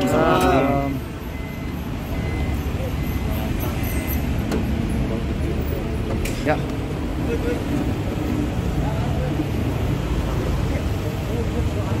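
A car engine idles with a steady low rumble of street traffic, broken by a few faint short clicks. Voices are heard briefly at the start.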